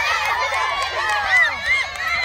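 A crowd of young children's voices shouting and calling out over one another, high-pitched and overlapping, during a sack race.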